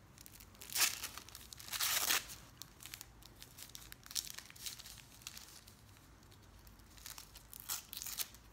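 Wrapping being torn and crinkled off a small candle by hand: a short tear about a second in, a longer tear around two seconds, then light crinkling and small tears, with another short tear near the end.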